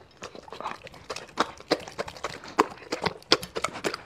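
Doberman eating close to the microphone: wet chewing of soft fruit chunks and lapping of meat juice from a plate. The sound is a quick, irregular run of smacks and clicks.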